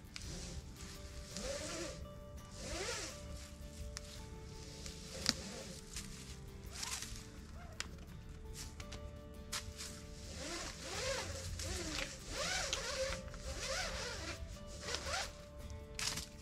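Rope pulled hand over hand and coiled, each pull a rasping swish of rope sliding through the hands, coming in an uneven series about once a second, with soft background music underneath.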